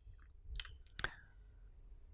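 A few faint clicks from a whiteboard marker being handled and uncapped, the sharpest about a second in.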